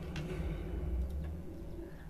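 Low steady hum with a few faint clicks.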